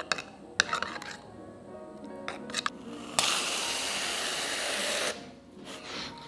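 A metal spoon clinking against a small ceramic cup as espresso is stirred, then an aerosol can of whipped cream spraying in one steady hiss of about two seconds that cuts off sharply, the cream coming out way faster than expected.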